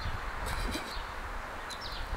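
Steady outdoor background noise with a short, faint bird chirp near the end.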